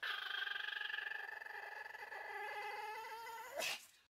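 A Pomeranian dog whining: one long, wavering whine that slowly drops in pitch, ending in a brief, louder cry near the end.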